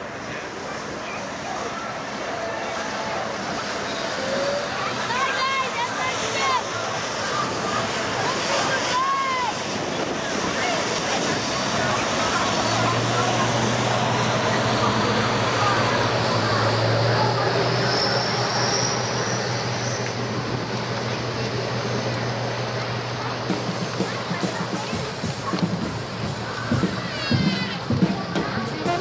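Rushing water and wind from a passing speedboat's wake, growing louder toward the middle, with passengers' voices and a few short shouts. A steady low hum sets in about halfway through and stops a few seconds before the end.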